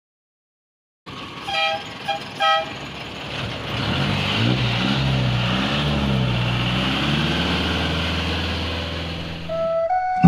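Street traffic heard from inside a passenger jeepney, starting about a second in: two short horn toots, then a steady traffic rumble with a vehicle engine whose pitch rises and falls.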